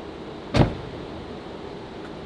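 A Tesla's car door pushed shut by hand, closing with a single solid thud about half a second in, over a steady background hum.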